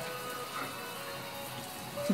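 Water from a kitchen tap running steadily into a stainless steel sink.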